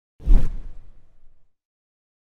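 A whoosh transition sound effect with a deep low rumble. It starts suddenly with a brief hiss on top and fades out over about a second.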